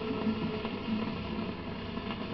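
Surface noise of a 78 rpm shellac record playing on after the song has ended: steady hiss with faint crackles and clicks, the last note fading out within the first half second.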